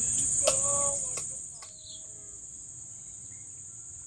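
High, steady buzzing of insects, loud at first and dropping away sharply about a second and a half in.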